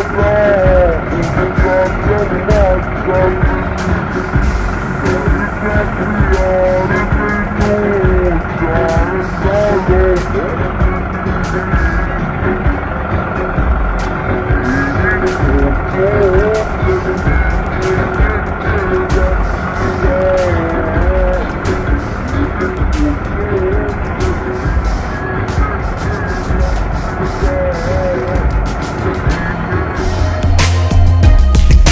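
A John Deere tractor's engine running steadily under a song with a voice singing and a beat of sharp clicks.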